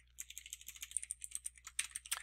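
Typing on a computer keyboard: a quick, even run of soft key clicks.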